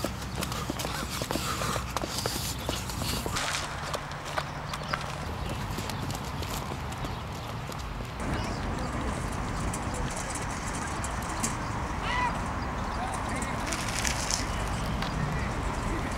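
Indistinct background voices over steady outdoor noise, with many irregular short clicks and knocks throughout; the background changes about halfway through.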